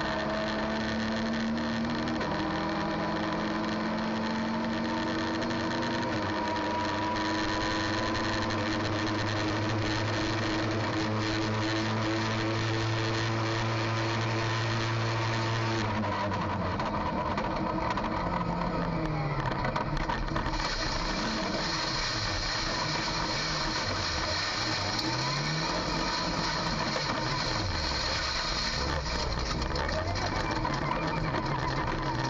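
In-car sound of a touring race car's engine under full throttle, pulling up through the gears along a straight. About halfway through it lifts off and brakes hard. The revs then rise and fall unevenly at low speed as the car is downshifted and worked through a slow corner.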